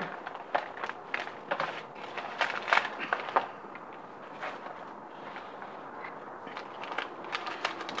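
Thick clear plastic bag crinkling and rustling in the hands as its contents are taken out: a run of short crackles over the first three seconds or so, then quieter handling.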